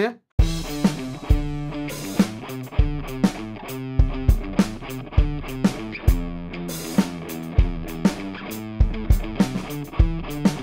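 Recorded guitar riff in D minor playing back, over a beat of low thumps and sharp hits; it starts just after a brief silence.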